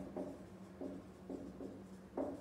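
Marker pen writing on a whiteboard: a few short, faint strokes as letters are drawn.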